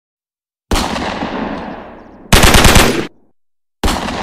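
Gunfire sound effects for an intro: a single heavy shot that rings out and dies away over about a second and a half, then a short, louder burst of rapid automatic fire, then another single shot near the end.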